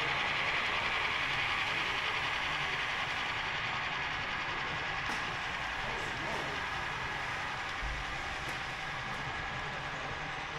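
HO scale model freight train running along the layout track, a steady rolling noise that slowly fades, with a few light clicks.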